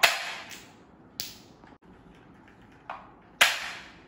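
Toy gun firing a string of sharp shot sounds, each with a short fading tail. The loudest shots come right at the start and about three and a half seconds in, with softer ones in between.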